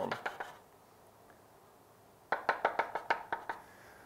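Chalk tapping against a blackboard while dashed lines are drawn: a few quick taps at the start, then a run of about ten rapid taps from about two seconds in.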